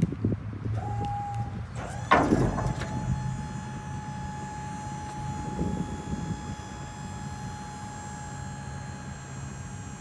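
Latch clicks, then the steel fold-down side gate of a Bwise dump trailer swinging open with one loud metallic clang about two seconds in. A steady low hum and a thin steady whine continue under it afterwards.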